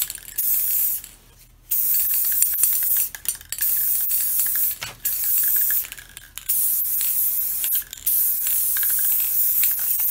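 Aerosol can of clear acrylic sealer spraying in repeated hissing bursts of one to two seconds with short breaks between, laying a light coat over dyed wood to seal in the dye.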